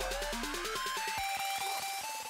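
Electronic background music: a melody of stepped synth notes with a rising sweep.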